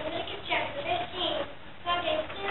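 Children singing, with short held notes.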